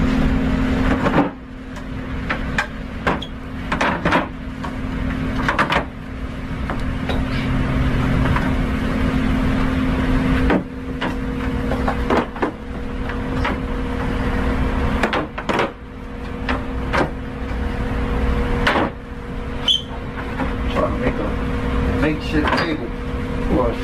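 Plastic milk crates knocking and clattering as they are lifted, set down and stacked, a dozen or so short knocks over a steady low hum.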